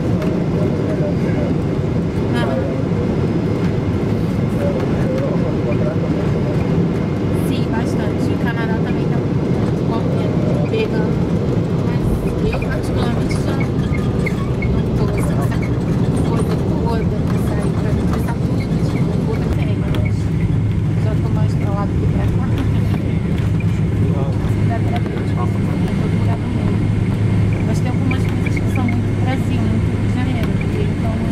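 Cabin noise of a Boeing 777-200 with GE90 engines landing, heard from a window seat over the wing: a loud steady rumble of engines and airflow through the approach and touchdown around the middle, then a deeper, steadier engine hum setting in about two-thirds of the way through as the jet rolls out on the runway.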